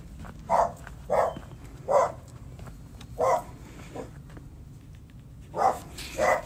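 A dog barking repeatedly, about six short barks at an irregular pace with a pause shortly before the end.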